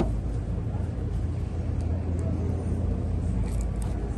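Steady low hum of air conditioning in a tent, with a few faint light clicks.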